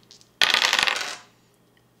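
A pair of small dice rolled onto a wooden tabletop, a quick run of clattering clicks about half a second in that dies away within a second.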